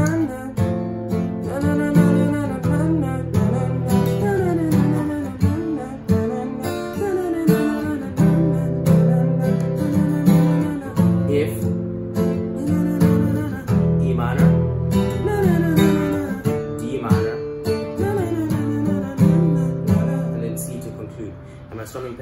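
Acoustic guitar strummed in open chords with a repeating down-down-down-up-up-down-up pattern on each chord, while a voice hums the song's melody along with it.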